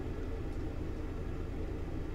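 Steady low hum and room noise with no distinct event.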